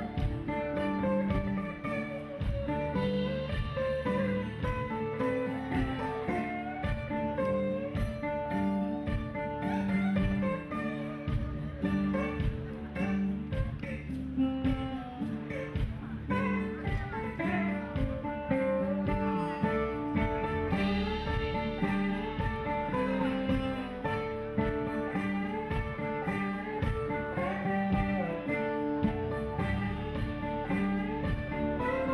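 Instrumental acoustic string-band music, with guitar and other plucked strings playing a continuous melody over a steady rhythm and no singing.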